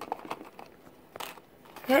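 Faint handling noise: light rustling and a few soft taps as things on a desk are picked up and moved.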